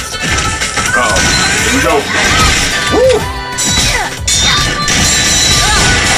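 Animated fight-scene soundtrack: a rock song with singing, cut through by several loud crashes and hits from the fight.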